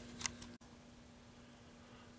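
Two faint small clicks, then near silence: room tone with a faint steady hum.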